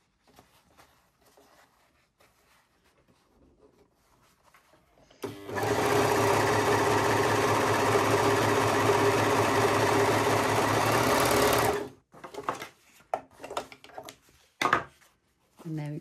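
Brother 1034D overlocker running steadily at full speed for about six seconds as it sews a test seam, starting about five seconds in and cutting off abruptly. This is a test run after the thread has been pressed fully back into the tension discs. It is preceded and followed by light clicks and fabric rustling from handling.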